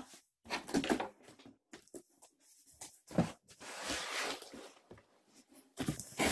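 A large cardboard shipping box being pulled open by hand: cardboard flaps scraping and packing paper rustling, with a sharp knock about three seconds in.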